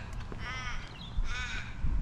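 A crow cawing: two harsh calls about 0.8 s apart, part of a slow, evenly spaced series.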